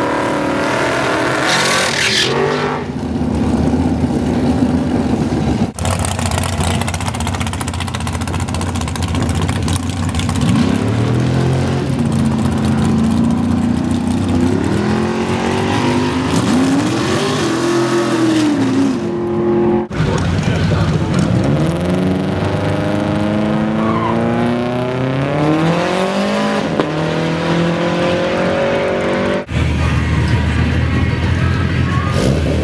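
Drag-race engines at full throttle in several short clips: a classic Ford Mustang drag car doing a tyre-smoking burnout, then a dragster's engine revving up and down at the start line, then a car accelerating hard with its engine pitch climbing steadily.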